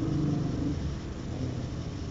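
A man's drawn-out hesitation sound, a held 'eh', that trails off under a second in, over a steady low rumble.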